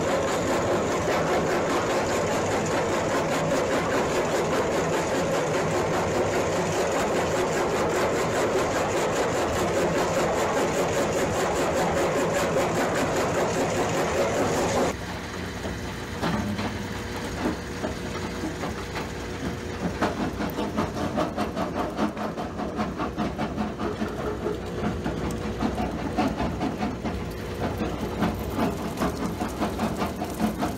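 Jaw crusher running and crushing chunks of ore, a loud, dense mechanical rattle. About halfway it cuts to a quieter conveyor belt running with a steady hum and the clatter of crushed rock falling onto a pile.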